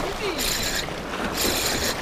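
Shimano Stradic CI4 4000HG spinning reel being cranked, a mechanical whirr in two stretches, over sea water washing on the rocks.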